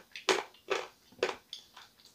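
A person chewing a piece of dried pink edible clay, with short dry crunches about twice a second, five in all.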